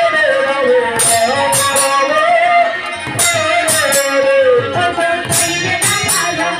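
Bengali harinam kirtan: a woman's voice sings a long, wavering melody line over khol drums, with sharp cymbal-like strikes in clusters every second or two.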